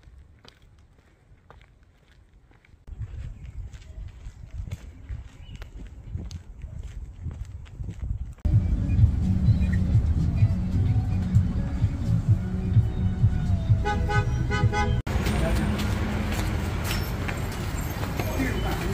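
Ride inside a city bus: a loud, steady low rumble of engine and road noise, with a short run of rapid beeps near the end of the ride. It then gives way to outdoor traffic and wind noise.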